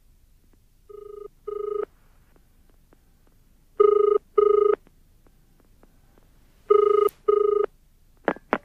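Telephone ringing with the British-style double ring: three pairs of short electronic rings about three seconds apart, the first pair quieter. It is a call ringing out just before it is answered.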